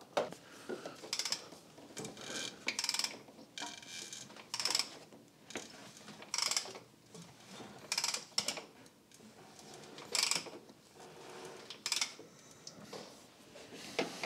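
Irregular short scrapes and clicks, about one every second, of hand work on the engine while a borescope is worked down a spark plug hole.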